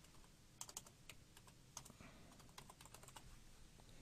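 Faint keystrokes on a computer keyboard: a scattered run of light taps as a short name is typed.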